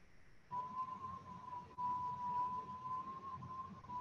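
A steady, high-pitched whistle-like tone starting about half a second in and holding one pitch, wavering slightly near the end.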